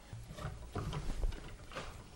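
A thread-cutting die being turned by hand on the end of a truss rod, cutting new threads past where the old ones ran out. It makes faint, irregular creaks and clicks, several in two seconds.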